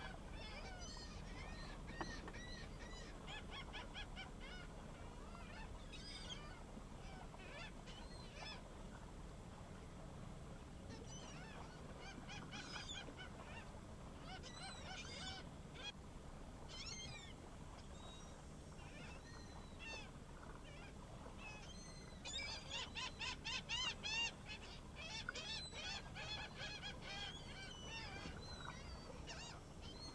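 Birds calling on and off, short high calls, with a fast, louder run of calls about two-thirds of the way through.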